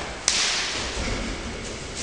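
A single sharp crack, a kick slapping into an opponent's body in Kyokushin sparring, about a quarter second in, followed by a short noisy rush that fades over about half a second.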